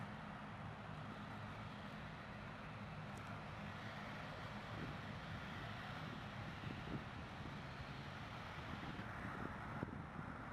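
Airbus A330 airliner's jet engines at low idle thrust as it taxis into position on the runway, heard as a steady low hum under a faint rushing noise.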